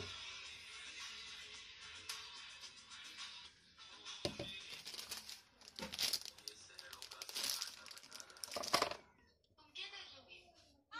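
Plastic wrapper of a white compound chocolate slab crinkling and rustling as it is handled and set down on a kitchen scale, in a run of crackly bursts from about four seconds in until near the end.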